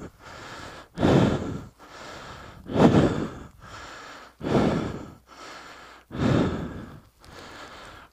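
A man breathing hard from exertion: four loud, heavy exhales spaced about a second and three quarters apart, with quieter inhales between them.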